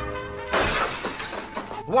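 Window glass shattering from a thrown rock, a radio-drama sound effect: a sudden crash about half a second in that dies away over about a second. Orchestral music ends just as the glass breaks.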